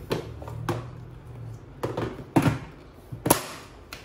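A handful of sharp plastic knocks and clicks as the clear dust container of a Philips PowerCyclone 5 bagless vacuum is seated back onto the vacuum body. The loudest knock comes about three seconds in.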